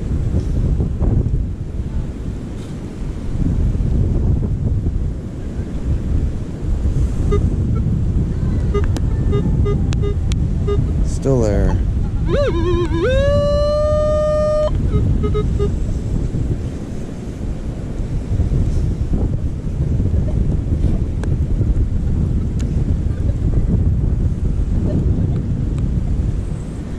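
Wind buffeting the camera microphone throughout, with surf behind it. About halfway through come a few faint short electronic beeps, then a sliding pitched sound that settles into a steady note held for about two seconds.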